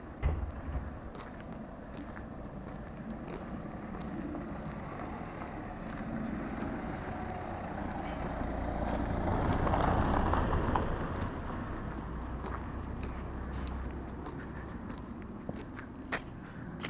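A car drives past close by, its sound swelling to a peak about ten seconds in and then fading, over a steady low wind rumble on the microphone with scattered light clicks.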